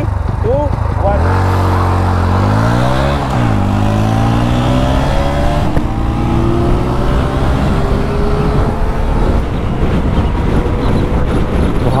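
A Bajaj Pulsar NS125's single-cylinder engine accelerating hard from a standing start alongside. Its pitch climbs, dips at a gear change about three seconds in, then climbs again more slowly, with wind rush building as speed rises.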